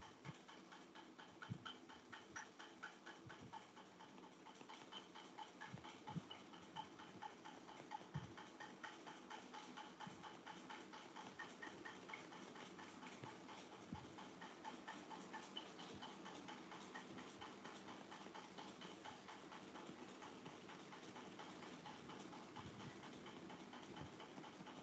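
Faint, rapid clicking and tapping of a stylus tip on a tablet's glass screen during handwriting, with a few soft low thumps in the first half.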